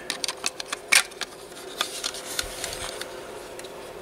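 Light clicks and taps of hard plastic as the body of a plastic AMT 1955 Chevy Bel Air model kit is handled and fitted down onto its chassis, with a sharper click about a second in.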